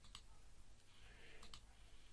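Near silence, with two faint clicks, one just after the start and one about a second and a half in.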